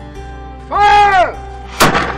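A long shouted command, then a single blank shot from a small black-powder deck cannon near the end, sharp and loud with a short ringing tail.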